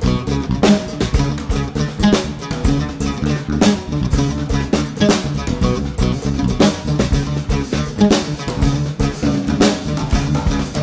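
Live band music: a drum kit played with sticks in a steady groove, heavier hits about every second and a half, over plucked string lines in the low register.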